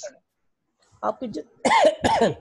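A man coughing and clearing his throat: two short coughs, the first about a second in and the second, louder, near the end.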